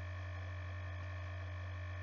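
A steady low electrical hum, mains hum, over quiet room tone, with no other sound standing out.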